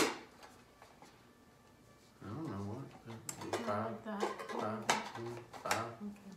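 Plastic plunger of a hand-pressed food chopper clacking sharply at the start, then a few single clicks later, under a low, indistinct voice.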